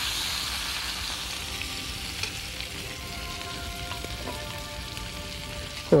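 Bass fillets sizzling on a hot grill as basting sauce is poured over them. A steady, dense hiss that eases slightly over the seconds.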